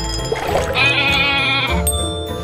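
A cartoon goat bleat sound effect: one quavering bleat of about a second, starting a little under a second in, over jingle music.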